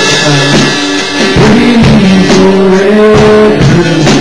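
Live worship band playing a rock-style song, with drums and guitar under long held notes that change pitch step by step.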